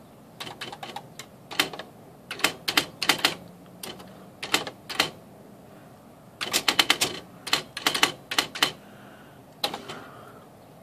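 Smith Corona electronic typewriter typing: sharp print strikes at an uneven pace, some single and some in quick runs, a short run about a quarter of the way in and a longer one just past the middle.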